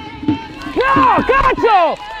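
A man yelling in frustration at a missed chance: a few loud, drawn-out shouts in the second half.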